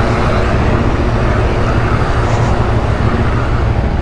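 Suzuki V-Strom 1050's V-twin engine running steadily at low speed, heard from on the moving bike.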